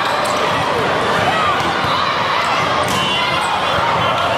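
Volleyball rally on a hardwood gym court: a steady din of many voices, a couple of sharp ball contacts, and sneakers squeaking on the floor near the end.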